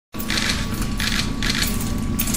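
Metal jingling in an even rhythm, about three times a second, over a steady low room hum. It cuts in abruptly just after the start.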